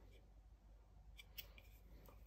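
Near silence, with a few faint clicks and taps of a cardboard board-book page being turned by hand, a little over a second in.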